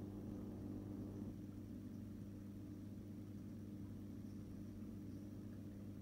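Faint, steady low hum of a reef aquarium's running equipment, with an even hiss underneath and no change in level.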